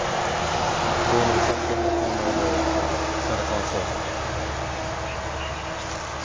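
Road vehicle noise, an even rush that is loudest in the first couple of seconds and then slowly fades, with faint talk underneath.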